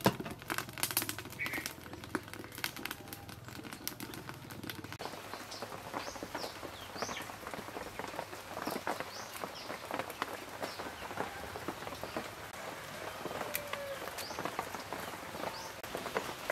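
Light clicks of a pot and its aluminium lid being handled, over a low hum, for the first few seconds. Then a soft crackle of herb leaves being snapped off their stems, while small birds chirp many short calls.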